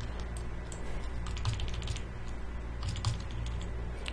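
Computer keyboard and mouse clicks, with a quick run of keystrokes about a second and a half in and a few more clicks near the three-second mark, over a low steady hum.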